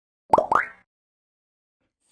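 Two quick pops, each sliding up in pitch, one right after the other: a cartoon-like 'bloop' sound effect for an animated logo.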